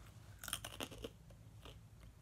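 Faint chewing, with a few soft crunchy clicks of a snack being eaten.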